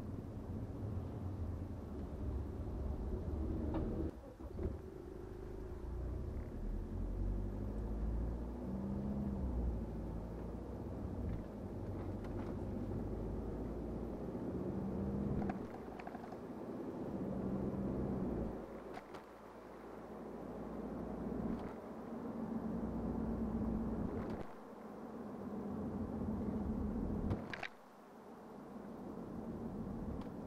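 BMW 520d's four-cylinder diesel engine and road noise heard from inside the cabin while driving, the engine note rising and falling in pitch, with a few sudden brief drops in level.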